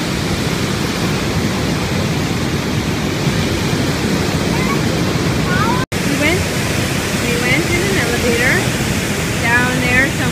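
Steady, dense rush of the American Falls at Niagara, heavy water pouring onto rocks below. It cuts out for an instant about six seconds in, then carries on the same.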